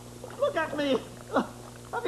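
A character's voice giving a few short wordless moans and whimpers that slide up and down in pitch, with a quick swoop about halfway through.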